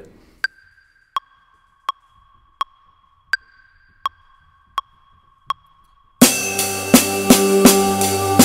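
Metronome count-in of eight clicks, about 83 a minute, with a higher accented click on the first of each group of four. Just past six seconds, the drums come in: eighth notes on the ride cymbal with the snare drum, loud against the clicks.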